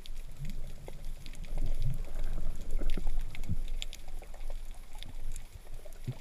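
Underwater ambience through a GoPro's waterproof housing: a low muffled rumble of water moving around the camera, with many scattered faint clicks and crackles.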